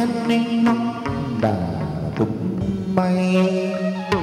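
Chầu văn ritual music: an instrumental passage of held melodic notes over sharp percussion strokes about twice a second.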